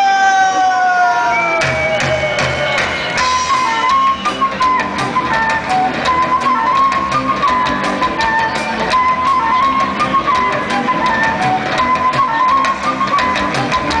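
Ska-punk band playing live with trumpet, electric guitars, bass and drum kit. A long note slides down over the first second and a half, then the full band comes in with steady drum hits and the trumpet playing a repeating melody.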